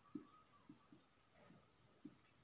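Felt-tip marker writing on a whiteboard: a few faint, short strokes, one after another.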